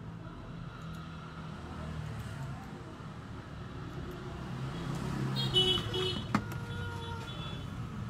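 Steady low rumble of road traffic, with a brief high-pitched beep a little after the middle and a sharp click soon after.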